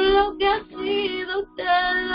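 A female voice singing a Spanish worship song in drawn-out phrases, with short breaks between them, over sustained instrumental accompaniment.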